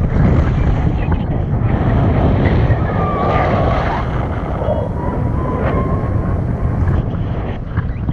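Loud wind rushing over a hand-held camera's microphone in flight under a tandem paraglider. A faint wavering voice rises over it in the middle.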